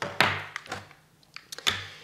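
Two dull thunks about a second and a half apart, with a few light taps between: small craft supplies (an ink pad and a small bottle) being handled and set down on a cardboard tray and a tabletop.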